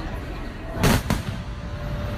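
Fireworks exploding over a steady low rumble: one loud bang just under a second in, followed a moment later by a second, weaker one.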